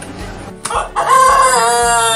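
Rooster crowing sound effect: one long, loud crow beginning about a second in, sliding slightly down in pitch, preceded by a short sharp click.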